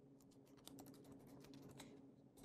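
Faint typing on a computer keyboard: a quick run of key clicks, densest in the middle, over a faint steady hum.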